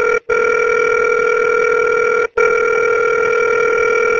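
Telephone line tone heard through the call, steady and loud, with two very short breaks, about a quarter second in and a little past two seconds in.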